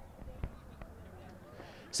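Quiet outdoor ambience with a few faint thuds, the clearest about half a second in.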